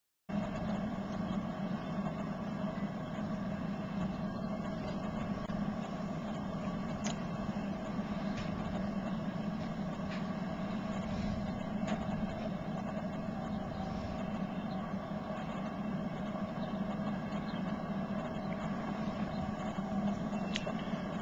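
Steady background noise with a constant low hum and a few faint ticks.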